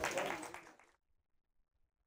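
Audience applause in a hall, fading and cut off suddenly about a second in, followed by silence.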